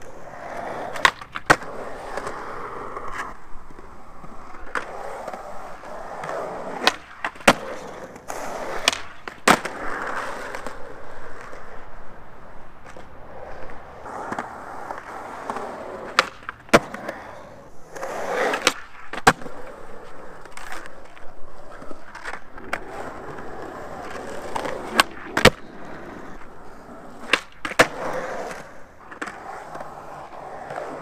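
Skateboard on concrete, its small hard wheels rolling, broken by sharp clacks of tail pops and board landings, several in pairs about half a second apart.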